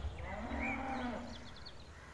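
A cow mooing once, a single call lasting about a second, with faint bird chirps above it.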